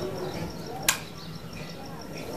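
Shirt fabric rustling as it is smoothed flat by hand, with one sharp click about a second in.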